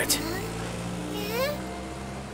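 Cartoon engine sound of a small tow truck running steadily as it drives along, with a brief rising whine about a second and a half in.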